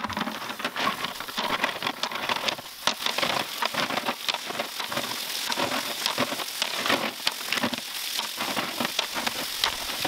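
Garden hose spray nozzle jetting water onto river rocks in a metal wheelbarrow: a steady hiss of spray and splashing, with many small clicks and taps as the water and stones knock about while the rocks are rinsed clean.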